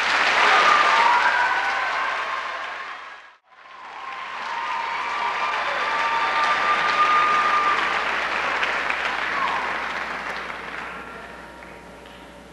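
Audience applauding in a large hall. It swells at the start, dips suddenly to almost nothing about three and a half seconds in, then rises again and fades away near the end.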